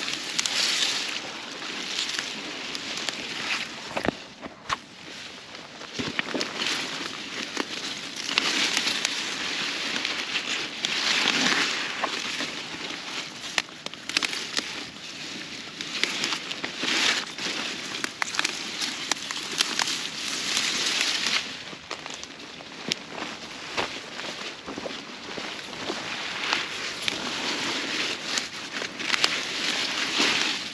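Turnip leaves and stems rustling and crackling as turnips are pulled up by hand, in repeated bursts every few seconds, with small snaps and clicks from the stems.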